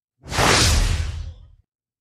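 A whoosh sound effect: one burst of rushing noise that swells in quickly and fades away over about a second and a half.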